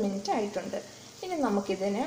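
A woman speaking, with cubes of paneer frying in oil in the pan sizzling faintly underneath.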